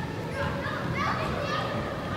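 Young soccer players calling and shouting to one another across the field, the voices distant and indistinct in a large indoor hall.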